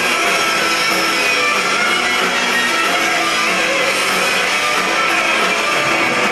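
Live rock band playing an instrumental passage with no vocals, electric guitars to the fore over bass guitar, at a steady loud level.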